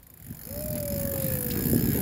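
Churned-up sea water rushing and sloshing against the side of a small boat in the turbulence left by a breaching whale, building over the first half-second. A faint thin tone slides slightly downward through the middle.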